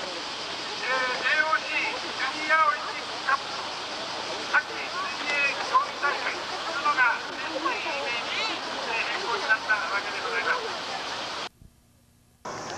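A man speaking into a microphone, reading a speech aloud over a steady hiss. The sound cuts off abruptly shortly before the end.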